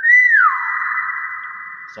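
Common hill myna calling: a loud whistled note that slides down in pitch, followed by a long, raspy drawn-out note that slowly fades.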